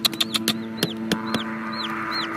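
A chicken peeping: short, high calls that rise and fall, about one every half second. Sharp clicks and rustles come with them in the first second and a half.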